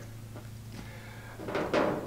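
Quiet room tone with a faint steady low hum, and a brief soft sound near the end.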